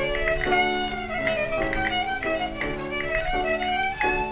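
A 1927 Victor 78 rpm recording of a Greek zeibekiko played by an instrumental trio: a sustained, sliding melody line over plucked string accompaniment and a steady low note, with faint clicks of the disc's surface noise.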